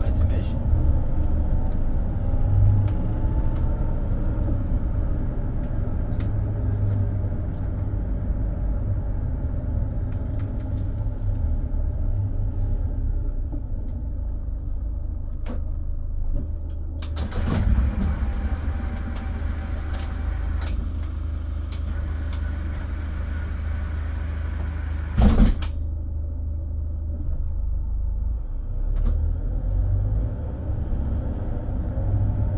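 Mercedes-Benz Sprinter City minibus diesel engine and road noise while driving, a steady low rumble with a whine rising in pitch as it speeds up over the first few seconds. A few seconds of hiss come in past the middle, and a single sharp thump, the loudest sound, follows near the end.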